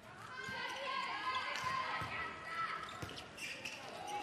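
Indoor handball game sound: a handball bouncing on the court several times at irregular intervals, with voices calling out in the sports hall.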